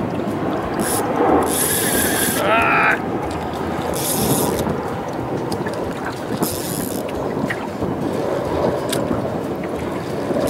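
Wind buffeting the microphone over lapping water on an open lake, a steady rush with several short gusts of high hiss.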